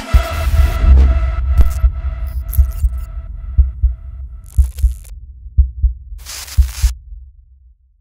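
Synthesized logo sting: a ringing chord dying away over low thumps that come in pairs like a heartbeat, with two short bursts of hiss near the middle and toward the end before it fades out.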